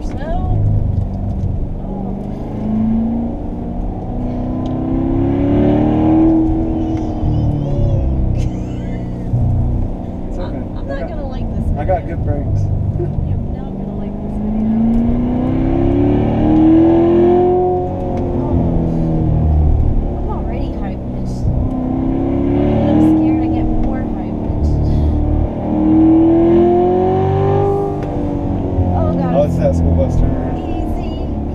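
Chevrolet C7 Corvette Stingray's 6.2-litre LT1 V8 heard from inside the cabin over a steady low rumble. Several times the engine winds up in pitch over a second or two and then eases off as the car is driven through a series of curves.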